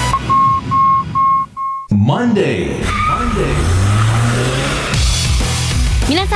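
Radio programme opening jingle: a row of about five short, evenly spaced high electronic beeps, then about two seconds in, after a sudden cut, music with gliding voices starts.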